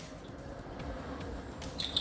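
Quiet handling of a plastic action figure as its arm is moved at the shoulder joint, over a low, steady background hum.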